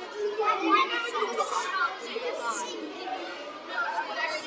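Crowd chatter: many children and adults talking at once.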